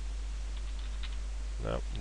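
Computer keyboard typing: a short, quick run of faint keystrokes about half a second to a second in.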